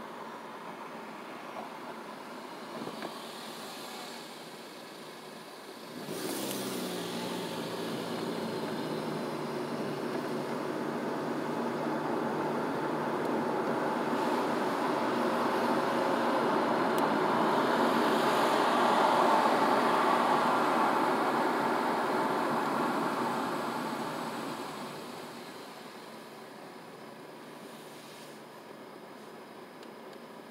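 A car pulling away from a standstill about six seconds in, heard from inside: engine and tyre and road noise rise as it gathers speed to around 20 mph, then die down as it slows.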